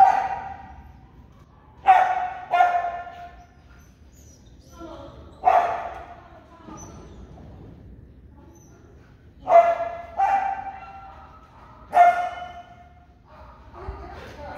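A dog barking: seven short barks at uneven intervals, some in quick pairs, each ringing out briefly in a large hall.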